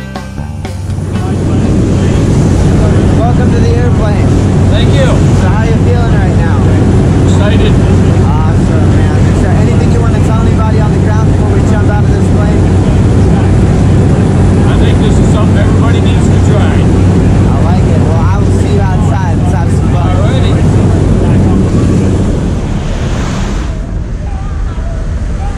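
Loud, steady low drone of a jump plane's engine and propeller heard inside the cabin in flight, with people's voices talking over it. The drone starts about a second in and drops away just before the end.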